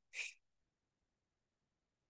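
A single short, sharp breath out, about a fifth of a second long, near the start, as the knee is pulled in on the exhale.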